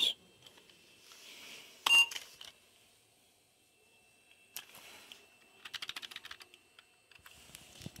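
Old 386 PC booting through its BIOS self-test: one sharp click with a brief beep-like tone about two seconds in, then a faint high whine and, in the second half, a patter of quick light clicks.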